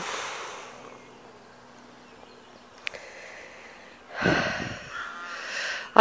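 A woman's breathing close to the microphone: a breath out just after the start, then quiet with a small click about three seconds in, and a longer noisy breath in the last two seconds before she speaks.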